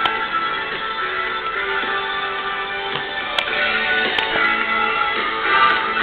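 Music from a local AM broadcast station, picked up by a homemade germanium-diode crystal radio and played through an external audio amplifier. It sounds thin, with no treble, and a few faint clicks come through.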